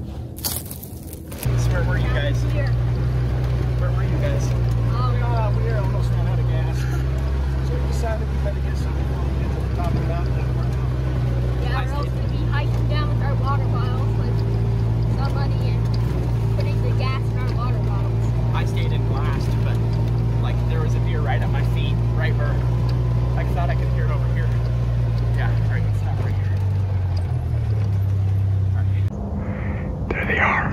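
Side-by-side utility vehicle's engine running at a steady speed, heard from inside the cab, with indistinct voices over it. It starts suddenly about a second and a half in after a cut, and its note drops shortly before it cuts off near the end.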